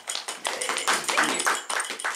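A small group applauding, many quick, irregular hand claps.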